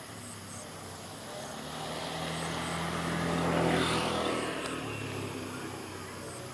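Engine of a passing motor vehicle, swelling to a peak a little past the middle and fading, its pitch dropping as it goes by. Faint, evenly repeated insect chirps sound behind it.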